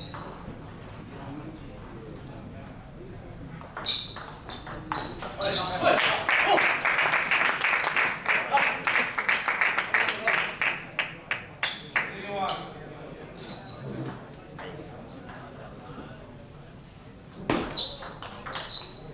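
A table tennis ball clicking off bat and table. Then several seconds of dense audience clapping and voices after the point. Then a few light ball bounces and the clicks of a new rally starting near the end.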